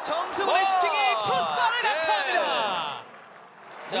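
Football TV commentators giving loud, wordless exclamations as a shot flies at goal, their voices sweeping up and down in pitch and falling away about three seconds in.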